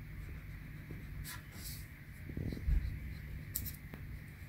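Wax crayon scratching on paper in a few short colouring strokes, with one soft low thump a little past halfway.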